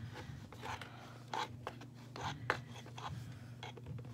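Cotton wool being pushed and stuffed into an empty plastic water bottle: irregular scratchy rubbing and rustling strokes, the sharpest about two and a half seconds in.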